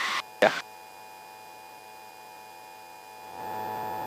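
Steady electrical hum on the aircraft's headset intercom audio, made of several faint even tones. About three seconds in, a soft rush of noise rises under it.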